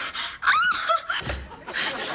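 Young women gasping with short, high-pitched, breathy cries of shock.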